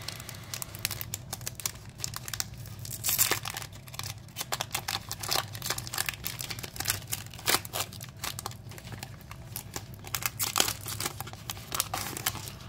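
Foil trading-card booster pack being torn open and crinkled by hand, with irregular crackles throughout.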